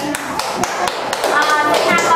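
A run of sharp hand claps at an uneven pace, thinning out as voices take over about halfway in.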